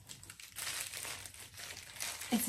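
White packing wrap crinkling and rustling as it is pulled off and handled by hand, in a run of small irregular crackles.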